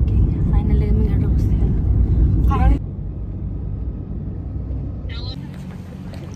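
Low rumble of a moving car heard from inside its cabin, with brief voices over it. The rumble cuts off sharply about three seconds in, leaving a quieter steady hum.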